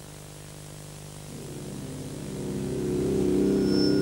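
Sustained synthesizer chord fading in about a second in and swelling steadily louder over a low steady hum, the start of the band's introduction before the violin enters.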